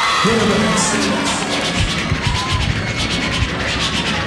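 Live hip hop beat playing between rapped verses, with drums keeping a steady rhythm and a crowd cheering.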